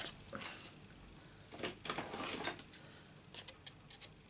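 Faint rustling of a sheet of cardstock being handled, then a few light clicks near the end as scissors begin cutting it.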